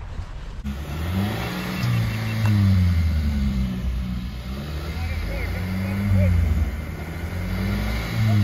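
A vehicle engine revving hard and easing off several times as it is driven at and over a dirt jump.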